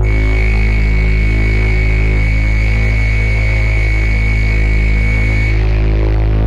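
Dark ambient electronic music: a deep, steady bass drone, joined by a thin, high, steady tone and hiss that cut off about five and a half seconds in.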